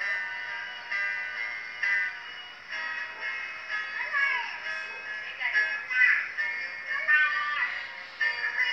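A man singing to his own acoustic guitar, with a thin, tinny sound lacking bass.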